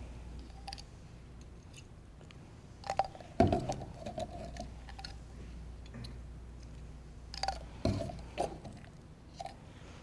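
Plastic labware handled on a benchtop: pipets and dropper bottles picked up and set down around a well plate, giving a few short clicks and knocks with a brief ring. They come about three seconds in and again as a cluster near the end.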